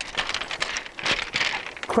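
A rapid run of crackling, crunching clicks close to the microphone as a hand works down among loose shingle pebbles.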